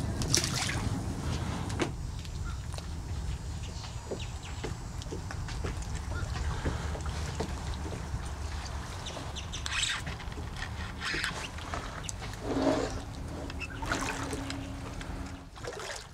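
Water lapping against a plastic fishing kayak's hull under a steady low rumble, with a few brief splashes and knocks scattered through.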